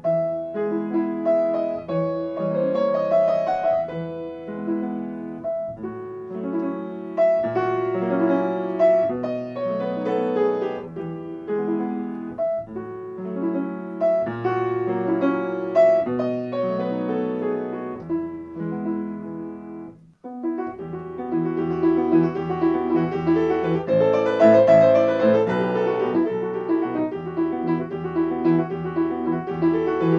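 Solo grand piano playing a romantic character piece in a lilting, even flow. After a brief pause about two-thirds of the way through, the playing turns fuller and louder.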